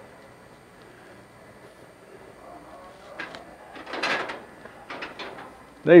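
Faint hangar room tone, then a few soft knocks and a scuffing shuffle in the second half, loudest about four seconds in: footsteps of people moving on a concrete floor.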